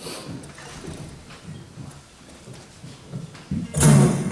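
A quiet pause with a few faint soft knocks and handling sounds, then acoustic guitars come in with a loud strum just before the end, the start of a song.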